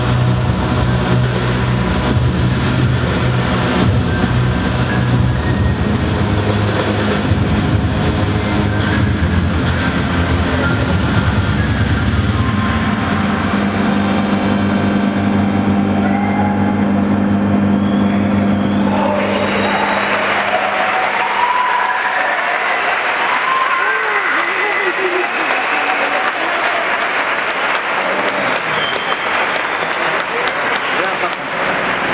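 Loud electronic soundtrack of a projection-mapping show, dense low drones and pulses, thinning to a single held low tone that ends a little past halfway. The crowd then cheers and applauds.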